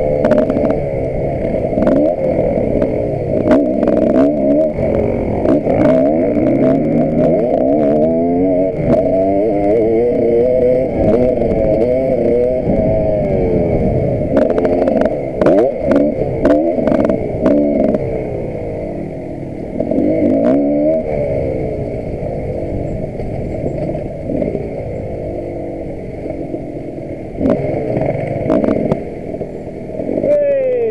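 KTM 525 EXC enduro motorcycle's single-cylinder four-stroke engine ridden off-road, its pitch rising and falling constantly as the throttle opens and closes. Sharp knocks and rattles from the bike over rough ground run through it, thickest in the first half.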